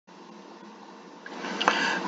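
Faint steady room hiss, then a person drawing a breath in, with a small mouth click, in the second before speaking.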